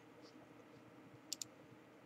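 Near silence: quiet room tone, with two quick, faint clicks close together about a second and a half in.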